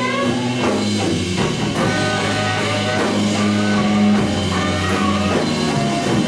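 Live blues band playing: an electric guitar lead with bent, sustained notes over bass and a drum kit.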